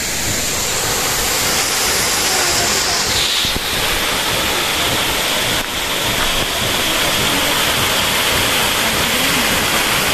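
Small waterfall cascading over boulders: a loud, steady rush of falling water. Its hiss drops slightly in pitch about three seconds in.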